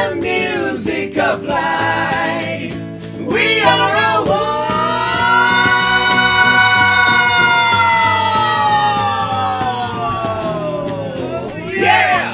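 Small live band session with guitars and singing. Short sung phrases at first, then from about four seconds in a voice holds one long note for about seven seconds, sliding down in pitch as it ends.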